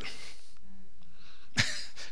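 A single short cough about a second and a half into a pause in speech, in a room with a quiet background.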